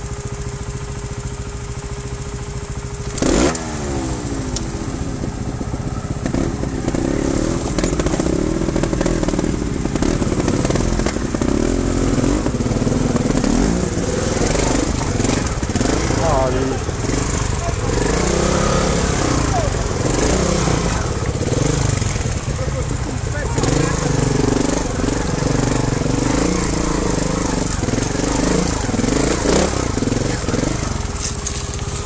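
Trials motorcycle engine running at low revs over rocks, the throttle opened and closed in short bursts so the pitch rises and falls. There is a sharp knock about three seconds in.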